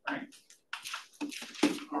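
Speech only: a man's voice says a short word, then fainter, broken talk and room noise follow, with no distinct non-speech sound.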